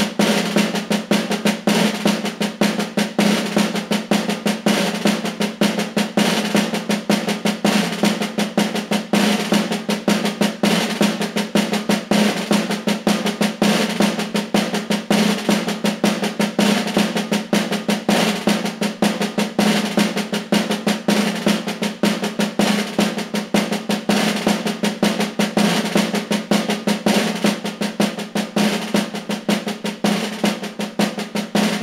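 Chrome metal-shell snare drum (caja) played with wooden sticks in a steady, unbroken stream of rapid strokes and rolls, the drum's ringing tone sustained under the hits. It is the snare part of an entradilla, a Castilian folk piece normally played with the dulzaina, here on the drum alone.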